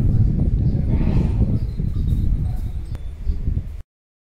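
Wind buffeting the microphone: a loud, irregular low rumble that cuts off abruptly near the end.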